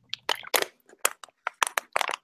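Thin plastic water bottle crackling in a hand as someone drinks from it: an irregular run of sharp crackles and clicks.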